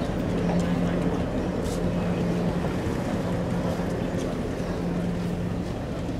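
A motor vehicle's engine idling, a steady low hum that holds one pitch throughout.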